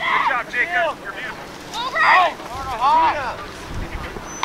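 Distant, unclear shouting from people around the field, several calls rising and falling in pitch, loudest about two seconds in. Wind rumbles on the microphone in the second half.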